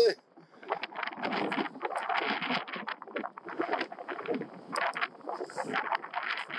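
Wind buffeting the camera's microphone outdoors, an uneven rushing noise that starts just under a second in and keeps going.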